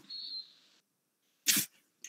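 A faint hiss, then about one and a half seconds in a single short breathy burst from a person over a video-call microphone.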